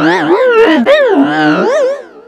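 A loud, warbling, howl-like voice whose pitch keeps swooping up and down, with a lower held note about halfway through.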